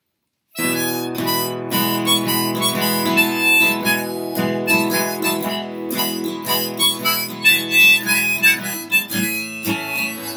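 Harmonica in a neck rack and strummed acoustic guitar playing together in a folk song's instrumental opening, starting suddenly about half a second in.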